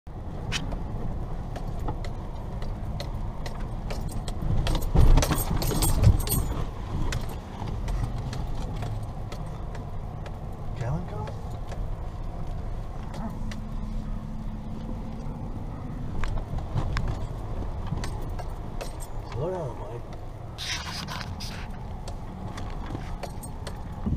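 Inside a car driving slowly along a muddy, rutted dirt track: a steady low rumble of engine and tyres, with clattering rattles and knocks as the car bumps along, loudest about five to six seconds in.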